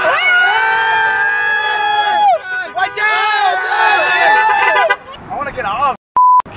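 Men's voices yelling two long, drawn-out shouts, each held for about two seconds.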